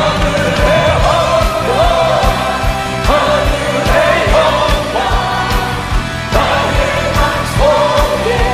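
Live worship music in Korean: a male lead singer and a choir singing a gospel hymn over a band with a steady kick-drum beat.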